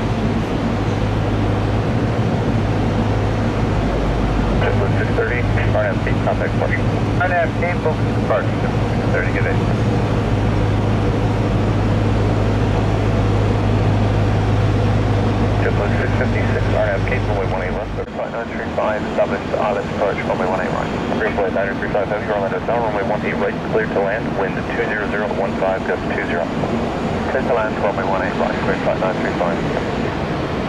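Steady low drone of aircraft at an airport apron, with indistinct voices over it. The drone stops suddenly about eighteen seconds in, and the voices go on over a fainter background.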